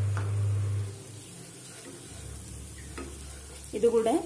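Wooden spatula stirring and scraping a masala paste as it fries in a nonstick frying pan, with a few small clicks. A low steady hum cuts off about a second in.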